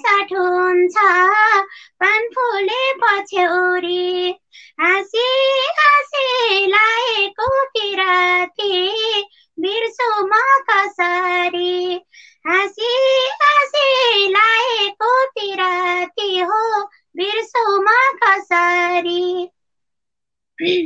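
A woman singing a Nepali dohori folk song in a high voice with vibrato, in short phrases with brief breaks, with no instruments heard. The singing stops near the end.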